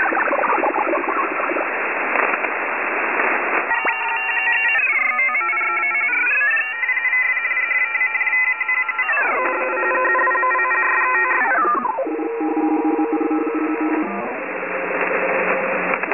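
Thin, radio-like static hiss that gives way after about four seconds to layered whistling tones. The tones slide down, climb back up and fall away again several times, settling into a lower steady hum near the end as the hiss returns.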